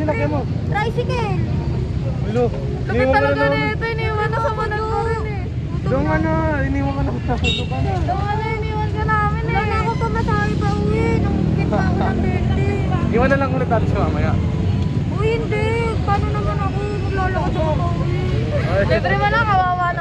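People talking in a lively conversation over the steady low rumble of street traffic with motorcycles.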